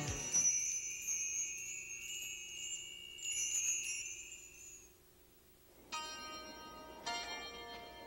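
Chimes in a TV soundtrack: a high shimmering wind-chime sound that fades out over the first five seconds, then two sustained bell-like notes struck about a second apart.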